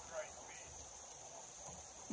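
Faint, steady high-pitched chirring of insects, with a brief murmur of voices at the very start.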